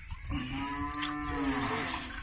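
A cow mooing: one long call lasting about a second and a half, holding a steady pitch that sags slightly at the end.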